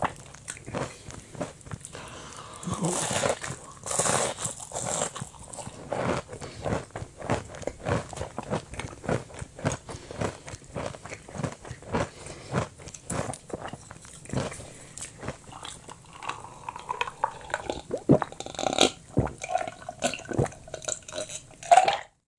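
Close-up chewing of crispy deep-fried food, breaded cutlet and hash brown, heard through an in-ear binaural microphone: crunchy bites and steady mouth chewing with many small crackles and wet clicks, crunchiest a few seconds in.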